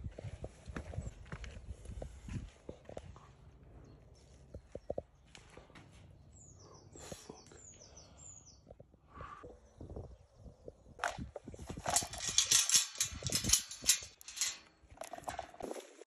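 Footsteps thudding on concrete steps, then a quieter stretch with a few short high chirps. From about twelve seconds in comes the loudest part: trainers swishing through long grass.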